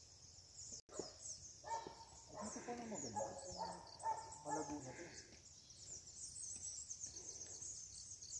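A faint, steady high-pitched chirping chorus of forest wildlife runs throughout. Distant voices talk briefly in the middle.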